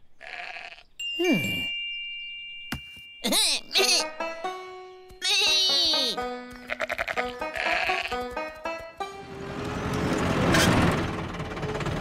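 Cartoon soundtrack of animated sheep characters bleating and vocalising in short calls with gliding and wobbling pitch, mixed with musical stings. A rising, noisy rush builds over the last few seconds.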